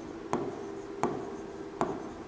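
A pen writing on a board in light strokes, with three soft taps spaced under a second apart.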